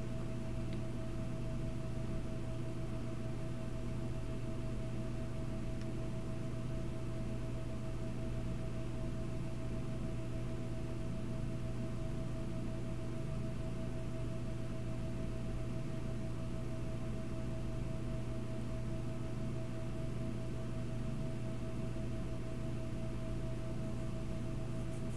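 Steady background hum with a constant higher-pitched whine over a faint even hiss, unchanging and without any clicks or other events.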